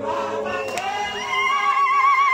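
A crowd of voices singing together in a group, like a choir. About a second in, one high voice comes in louder over the rest, holding a long note with a wide, wavering vibrato.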